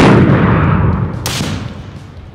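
A single rifle shot, its report ringing out and dying away over more than a second, with a brief sharp crack about a second after it.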